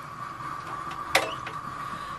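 A steady hum with a faint hiss from a running appliance, with one short, sharp click about a second in.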